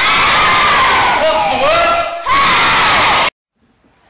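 A hall full of children shouting together, many voices at once, loud, in two bursts with a brief dip a little after two seconds in. It cuts off suddenly just after three seconds.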